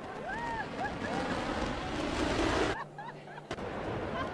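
Distant rushing noise of the New Shepard booster's BE-3 rocket engine firing again for its landing burn, building over the first few seconds and dropping out briefly before returning near the end.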